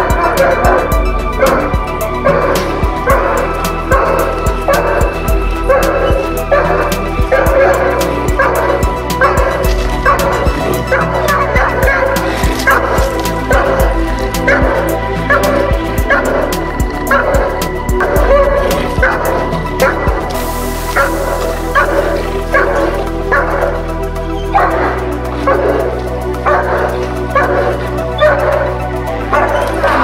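German Shepherd protection dog barking repeatedly, about two barks a second, guarding its handler, over background music.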